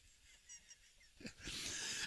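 A man's faint breathing close to the microphone, rising near the end into the breathy start of a laugh.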